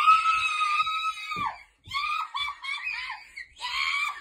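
A child's high-pitched scream held for about a second and a half, followed after a short break by a run of short, high squeals.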